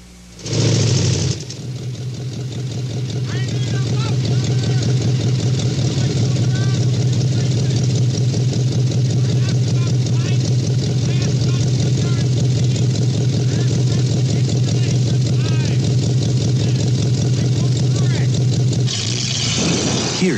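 A car engine starts with a brief burst about half a second in, then runs with a loud, steady, deep exhaust rumble that slowly swells and stops shortly before the end. The exhaust is loud, as from a worn-out muffler, and a man's voice is faintly heard beneath it.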